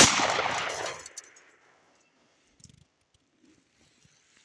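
A single shot from a 9 mm Smith & Wesson Model 59 pistol at the very start, its report ringing out and dying away over about a second.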